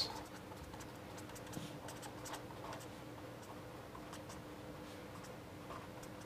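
Marker pen writing letters on paper: faint, short scratchy strokes, one after another, over a low steady electrical hum.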